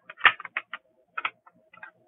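Small plastic drill containers clicking and tapping against each other and a plastic storage tray as they are handled: a run of about ten light, irregular clicks, with one louder knock about a quarter second in.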